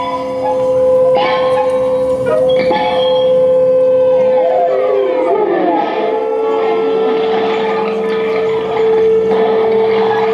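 Live electroacoustic free-improvised music: a loud held tone with sharp struck attacks about one and three seconds in, then a cluster of tones gliding downward near the middle, after which the held tone settles a little lower.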